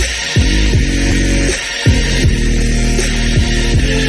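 Electronic bass music: a heavy, droning synth bass with repeated falling pitch sweeps, its deepest bass dropping out briefly near the start and again just before the middle.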